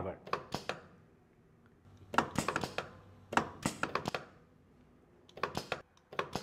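Short clusters of clicks and clacks from a pneumatic trainer as a Bosch push-button 3/2 normally closed valve is pressed: it sends a pilot signal that shifts the control valve and drives the cylinder forward. There are four separate bursts of clicking.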